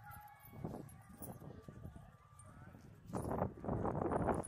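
Footsteps of a group walking on a paved path, with faint voices in the background. A louder rushing noise rises near the end.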